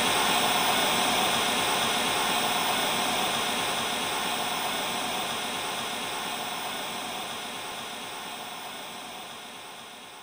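Television static from a TV with no signal: a steady hiss that slowly fades away.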